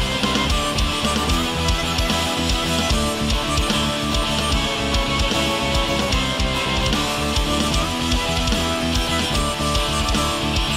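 Rock band music with electric guitar over a drum kit, playing steadily.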